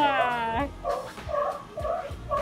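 Sea lions barking in a quick run of short, repeated calls, about three a second, after a voice gliding down in pitch at the start.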